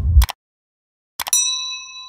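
Subscribe-button animation sound effects. A mouse click comes just after the tail of a whoosh cuts off. After a silent gap of about a second, a couple more quick clicks lead into a bright notification-bell ding that rings on and fades slowly.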